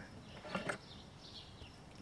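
Quiet outdoor background with two soft, brief knocks about half a second in, from a wooden-handled double-bit axe being handled and set on a wooden stump.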